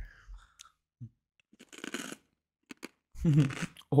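A wasabi-coated peanut being bitten and crunched, one short crunchy burst about two seconds in, with a few small clicks around it.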